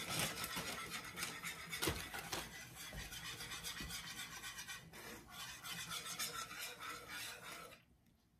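Wire whisk scraping quickly and steadily against the bottom of a nonstick skillet as it stirs a thick butter and brown sugar syrup. It stops just before the end.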